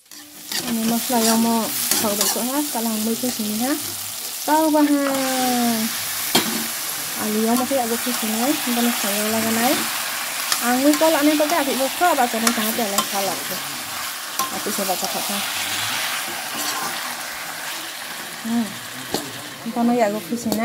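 Chicken pieces frying and sizzling in a karahi, stirred with a metal spoon that scrapes and clicks against the pan. A voice talks over it on and off for the first two-thirds.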